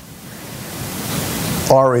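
An even hiss of background noise that grows steadily louder, then a man's voice starting near the end.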